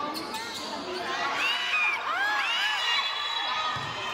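Basketball game sounds: sneakers squeaking in a flurry of short chirps on the court floor, with the ball bouncing, over the steady chatter of a crowd in a large hall.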